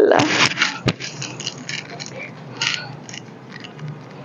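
Clothing being handled: cloth rustling and scraping in short bursts, with a sharp click about a second in.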